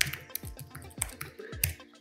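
Computer keyboard typing: a quick, uneven run of key clicks over soft background music.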